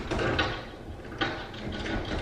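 A few short scraping and rustling handling noises while a hand places an anemone among the live rock in the tank.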